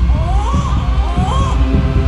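Newborn baby crying in a series of short rising-and-falling wails, over a low pulsing rumble and a steady hum.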